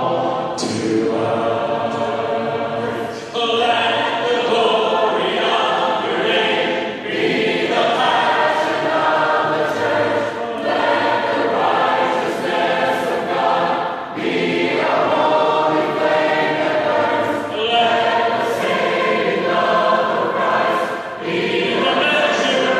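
A church congregation singing a hymn together in parts, a cappella, in phrases with brief breaths between them; the words include 'Jesus, you are all to us' and 'let the righteousness of God be the measure of our…'.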